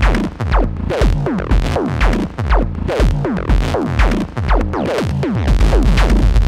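A 62HP Eurorack modular synthesizer playing a live electronic patch: a steady kick-drum beat under quick downward-sweeping synth notes. The bass grows denser near the end.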